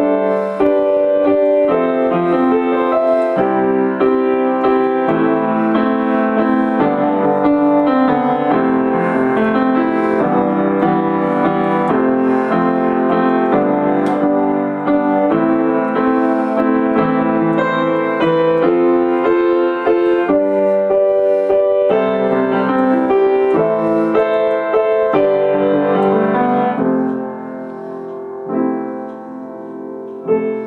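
Upright piano improvisation, chords and melody held on the sustain pedal so the notes ring on and blur into one another, which the player puts down to not yet knowing how much pedal to use. The playing drops to a softer, sparser passage about three seconds before the end.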